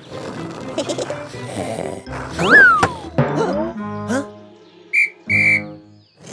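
Cartoon background music with comedy sound effects: a loud falling whistle glide about two and a half seconds in, followed by a click and bouncy glides, and two short high blips near the end.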